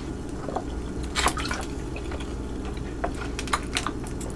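Water sloshing and glugging in a plastic water bottle as it is tipped up for a drink, with short wet clicks and gulps scattered through.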